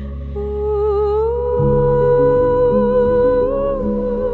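Ambient background music: a slow, gliding lead melody held over sustained chords, with the lower notes changing about one and a half seconds in.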